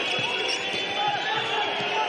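Handball bouncing on the indoor court floor, with short shoe squeaks from players cutting on the court, over steady arena crowd noise.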